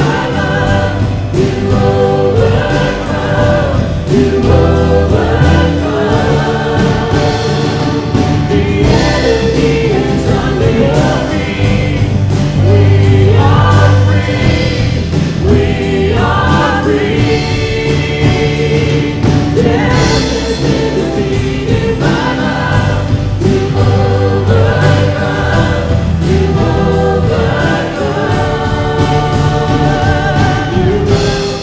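Church worship band and choir performing a worship song: lead and choir voices over acoustic guitar, electric guitar and keyboard, with a steady beat.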